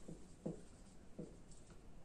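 Faint handwriting: a few short, separate writing strokes.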